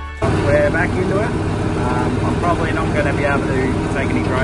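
Tractor engine running at a steady drone, heard from inside the cab, with a man's voice over it.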